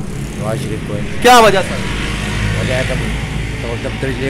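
Low rumble of a passing motor vehicle, swelling in the second half, under short bursts of a man's speech, the loudest about a second in.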